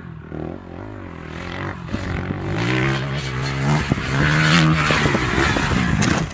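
Dirt bike engine revving hard, growing louder as the bike comes closer and loudest about four to five seconds in as it climbs a sandy bank.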